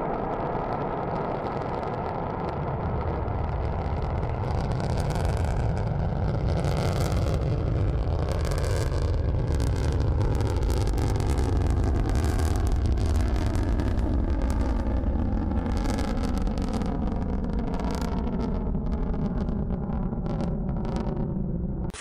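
Rocket motor at liftoff and climb-out: a steady, heavy low rumble with a crackle that sets in a few seconds in.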